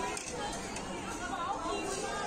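Indistinct background chatter: several people talking at a moderate level, no clear words.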